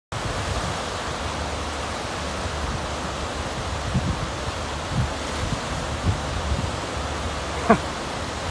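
Wind-driven lake surf breaking along the shore: a steady rushing noise, with low thumps of wind gusting on the microphone. A brief pitched call sounds near the end.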